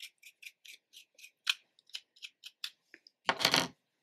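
A wide-tooth wig comb drawn through a short synthetic wig, each stroke giving a short, sharp rasp at about four strokes a second. The strokes thin out and stop a little before a single louder rustle near the end.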